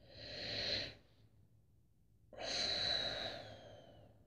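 A person breathing out twice, in long, breathy sighs: a short one at the start and a longer one in the second half.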